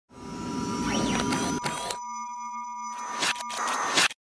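Synthetic electronic intro sting built from sine-tone beeps and chirps: a steady high beep with pitch sweeps gliding up and down, a stretch of several steady tones sounding together in the middle, then more quick sweeps before it cuts off suddenly.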